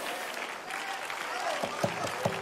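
Congregation applauding, with scattered voices calling out.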